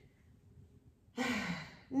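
Near silence, then about a second in a woman's short breathy sigh, a falling exhale of about half a second, from the effort of holding her legs raised in a core exercise.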